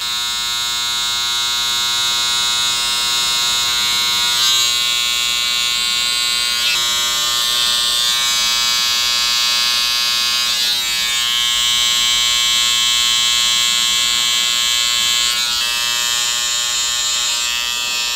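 Electric hair clippers running with a steady buzz while tapering the hair at the side of the head. The tone shifts slightly a few times as the blade works through the hair.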